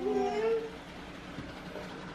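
A short, high-pitched call lasting under a second, rising slightly and then holding, followed by a faint steady background hum.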